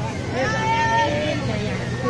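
A voice calling out in one long held shout, with a few shorter calls, over a steady low hum and faint background chatter.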